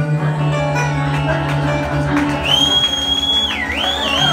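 Bluegrass string band of acoustic guitar, mandolin, banjo and upright bass playing the final notes of a song, the closing chord held and ringing. About halfway in, a long high whistle from the audience starts up and wavers up and down in pitch.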